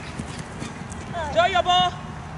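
A loud, high-pitched shout in two parts, about one and a half seconds in, over steady outdoor field noise.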